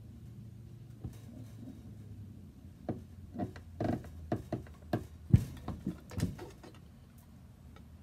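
Hand-lever bench shear cutting thin sheet metal: a run of about ten sharp snaps and clicks over three or four seconds as the blade works through the sheet, the loudest a little past the middle, over a low steady hum.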